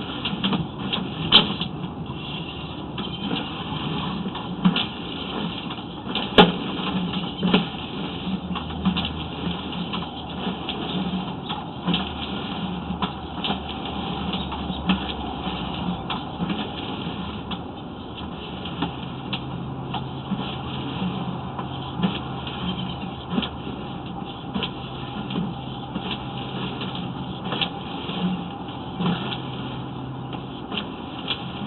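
Sewer inspection camera's push cable being fed down the sewer line: irregular clicks and knocks over a steady mechanical hum.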